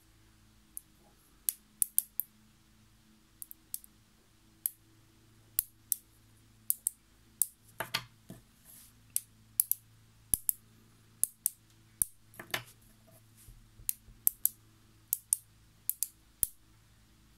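Small neodymium sphere magnets clicking sharply as they snap together, one or two clicks every second at irregular intervals. About eight and twelve and a half seconds in come two longer rattles.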